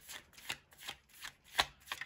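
A deck of tarot cards being shuffled by hand: a run of short crisp snaps, about three a second.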